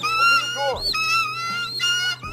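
Repeated high-pitched screeching cries of attacking birds, a film's sound effect, each cry with short rising-and-falling glides, over a steady low hum.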